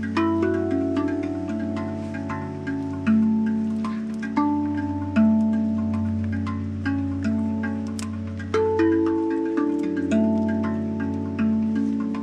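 Handpan played with the fingers: struck steel notes, one every half second to second, each ringing on and overlapping the next in a slow melody, over a steady low tone.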